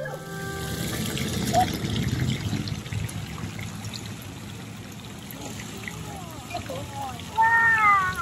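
Water trickling steadily at a koi pond, with a child's voice exclaiming "Wow!" near the end.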